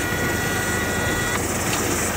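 Campervan's engine running, heard from inside the cabin, a steady even noise. A steady high tone sounds over it and stops about a second and a half in.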